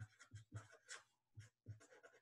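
Sharpie felt-tip marker writing on paper, faint, in a quick run of short separate strokes, several a second, as numbers and letters are written out.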